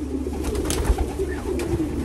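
Racing pigeons cooing in a loft, a low warbling coo running on under a steady low hum, with a few brief clicks and rustles about the middle.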